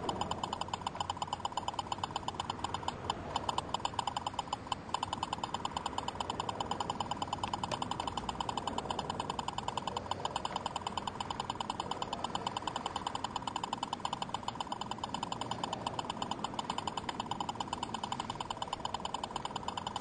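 Stalker lidar speed gun sounding a rapid, evenly pulsed tone while its trigger is held. It keeps up the tone while the gun fails to lock on, its display reading error E04: the laser jammer is defeating it.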